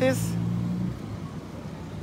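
A motor vehicle's engine running steadily nearby in slow-moving street traffic, its low hum fading out about a second in, leaving faint traffic noise.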